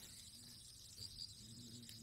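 Near silence: faint outdoor background with a steady high hiss of insects and two short high chirps a little after a second in.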